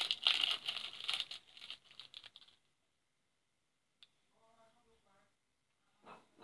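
A small packet's wrapper crinkling and tearing as it is opened by hand, for about two and a half seconds, then quiet apart from one faint click.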